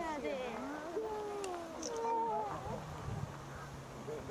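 Chatter of people at the railing, with high children's voices rising and falling in pitch; a low steady hum comes in over the last second or so.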